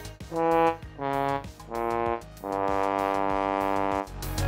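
A short brass sound effect: three short notes, then a long held fourth note that cuts off at the end.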